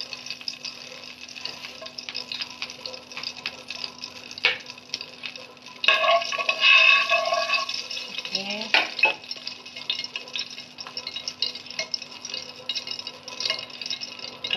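A utensil stirring and scraping around a pot of hot oil, with the oil crackling and sizzling in many small clicks. A short, louder pitched sound comes about six seconds in.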